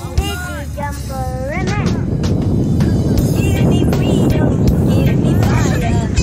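Voices calling out with rising and falling pitch in the first second or two, then a steady low rumble of wind buffeting the phone microphone that builds up and stays loud.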